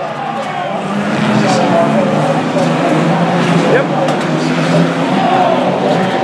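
Banger racing cars' engines running on the track, a steady drone that grows louder about a second in, with people's voices over it.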